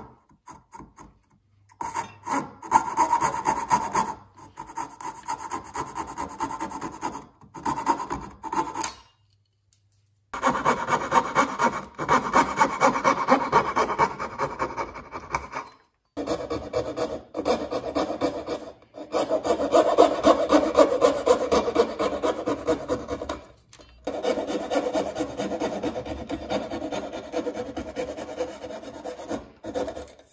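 A coping saw with a thin blade cutting across the grain of a wooden board to clear the waste between box-joint fingers. It goes in quick rasping strokes, several runs of them broken by short pauses.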